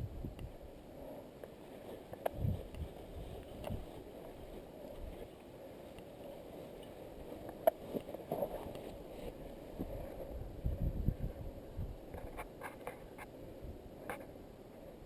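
Handling noise of a camera on the move along a grassy track: low rumbling bumps with wind on the microphone and scattered clicks and rustles. There is a louder run of rumbles about ten seconds in and a quick cluster of clicks near the end.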